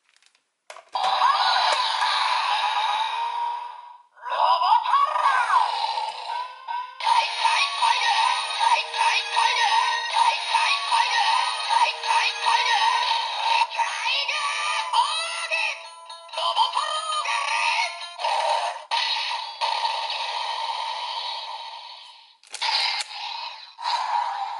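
An electronic toy's small built-in speaker plays a string of music and sung or voiced sound clips. It sounds thin and tinny with no bass, and comes in several blocks split by short pauses.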